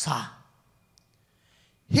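A man's breathy exhale into a handheld microphone as his phrase trails off, followed by a pause of over a second before his speech resumes near the end.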